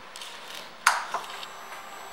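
Two sharp clicks about a quarter of a second apart, the first the louder, followed by a faint steady high whine.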